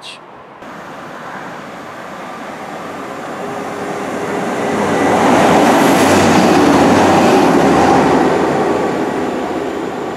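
Northern Class 195 diesel multiple unit running through a station. Its sound builds steadily as it approaches, is loudest a little past halfway, and then fades as it goes away.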